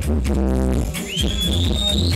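Roots reggae played loud through a sound system, with a heavy, rolling bass line. About a second in, a high whistling tone rises and then holds over the music.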